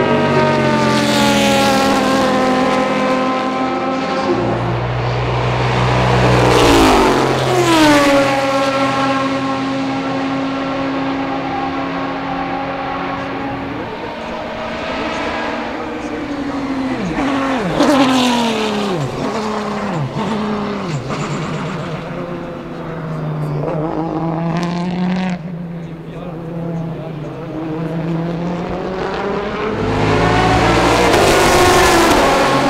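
Aston Martin DBR9 GT1 race cars' 6.0-litre V12 engines running hard at racing speed. The high engine note drops sharply as a car passes about seven seconds in. Several quick falling notes follow in the middle, and the revs rise again later.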